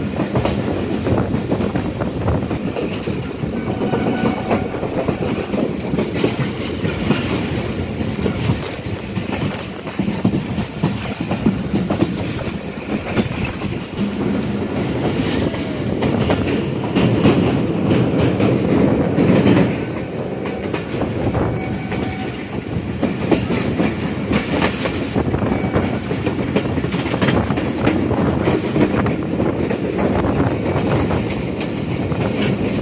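A Pakistan Railways passenger train running along the line, heard from on board: a steady noise of wheels on the rails with a continuous clickety-clack over the rail joints.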